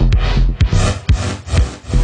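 Electronic music: a low drum-machine beat under washes of hiss-like noise that swell and fade several times.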